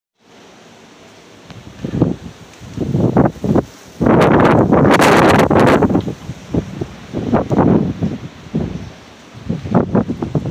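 Wind gusting over the microphone in irregular buffeting blasts, the strongest lasting about two seconds in the middle.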